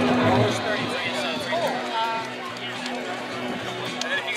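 Music playing at an outdoor event with people talking and chattering over it.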